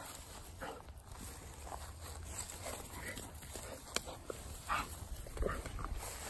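Two puppies play-fighting in grass: short, scattered growls and yips with scuffling paws, a little louder near the end.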